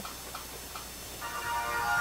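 Spin-the-wheel game on a phone ticking as the wheel slows, the ticks coming farther and farther apart; a little over a second in, a musical tone starts and swells.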